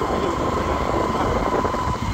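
Motorcycle running at a steady road speed, its engine rumble mixed with wind rushing over the microphone, with a thin steady whine running through it.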